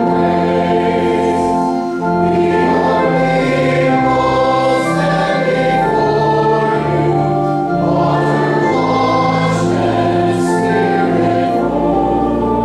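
Church congregation singing together in slow, long-held notes.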